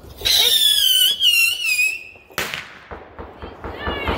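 A whistling firework screaming on one high note that slides slowly down for about two seconds, then a single sharp bang.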